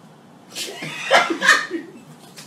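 People laughing: a burst of laughter begins about half a second in, with two loud peaks before it fades near the end.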